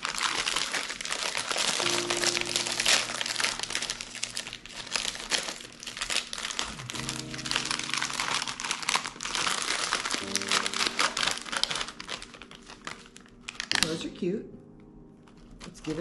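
Shiny metallic foil gift wrap crinkling continuously as it is crumpled and pulled open by hand. The crinkling stops about two seconds before the end. Background music plays underneath.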